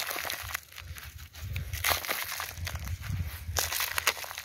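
Handfuls of fine, dry soil crumbled by gloved hands and poured into a cut-down plastic bottle: a gritty rustling with many small, irregular crackles.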